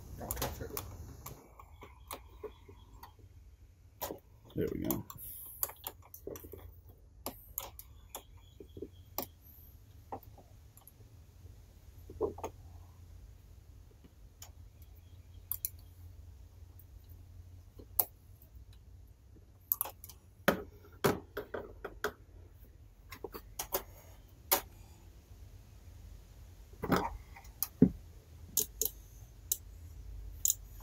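Irregular small clicks and light rattles of hands handling and working automotive electrical wiring, the plastic-insulated wires and connectors knocking together, over a faint low hum.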